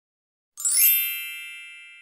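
A bright, shimmering chime sound effect for a logo: a cluster of high ringing tones that comes in about half a second in, peaks quickly and slowly rings away.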